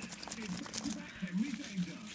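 Scrunched-up paper slips rustling and crinkling as a hand rummages through them inside a cap. A low, wordless voice hums along with it.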